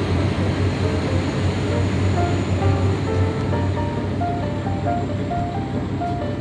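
Background music with a simple stepping melody, over the steady rush and low rumble of a passenger train going past on the adjacent track. The rumble fades about halfway through as the train clears.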